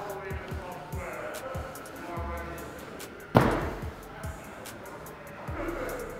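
Background music, with one loud thud about three and a half seconds in: an athlete landing a standing broad jump on artificial turf.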